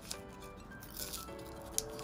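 Background music with steady notes, over the crinkle and tear of a foil booster-pack wrapper being ripped open by hand, with a sharper crackle near the end.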